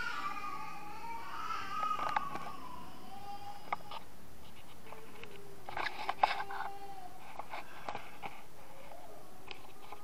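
A young child's voice in the background: a long, wavering call or whine in the first few seconds, and a second, steadier drawn-out call about five seconds in. A few light handling clicks are also heard.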